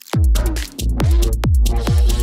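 Psytrance DJ mix: a pounding kick drum several times a second under a rolling bassline and synth lines. The beat drops back in right at the start after a short break, with a brief dip in the bass about halfway through.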